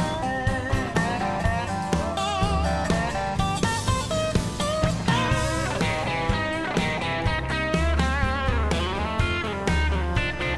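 Instrumental break of a rockabilly band: electric guitar lead with bent, wavering notes over walking upright bass and a steady drum beat.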